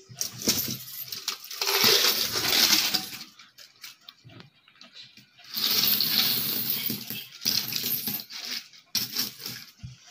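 A heap of coins pouring out of an upturned cylindrical coin bank, a dense jingling clatter of coins hitting each other and the pile. It comes in two main rushes, about two seconds in and again about six seconds in, with smaller clinks of a few coins near the end.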